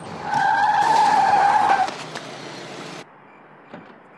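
A car's tyres squeal loudly under hard emergency braking for about a second and a half, then skid on with a hissing scrub until the sound cuts off suddenly about three seconds in.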